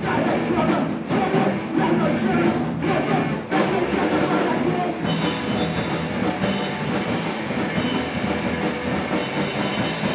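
Live rock band playing loud: distorted electric guitars, bass and drum kit. The first few seconds come in short, choppy stop-start hits, then the band settles into steady, dense playing from about five seconds in.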